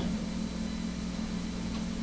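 Steady low hum with a faint even hiss: background noise of the recording.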